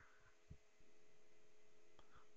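Near silence: a faint steady electrical hum, with one soft low thud about a quarter of the way in.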